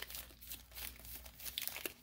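Foil Pokémon booster pack wrappers crinkling faintly as a handful of packs is shuffled in the hands.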